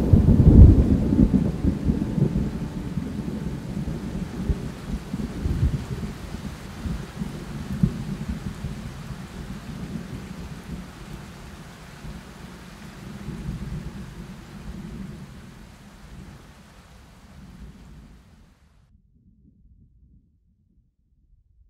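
Thunder rumbling over steady rain in irregular swells, slowly fading out until it is gone a little before the end. At the very start the last held orchestral chord dies away beneath it.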